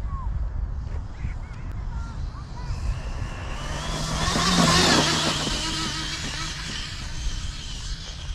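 6S electric RC car (Talion) running flat out on a speed pass: its motor whine and tyre noise build to a peak about five seconds in as it goes by, then fade.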